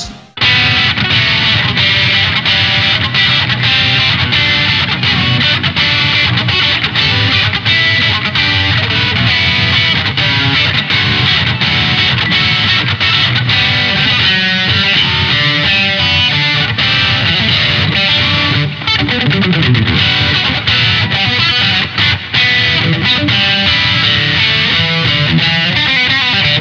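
Distorted electric guitar, a Vola, played continuously in a heavy, metal-style passage that starts abruptly.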